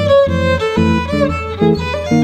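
Violin playing a swing-jazz solo melody, with sliding notes, over rhythmic chords from an archtop guitar.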